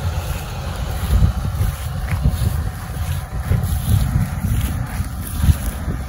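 Wind buffeting the microphone in irregular low gusts over the steady running of a large Fendt tractor working a field with a seeding implement.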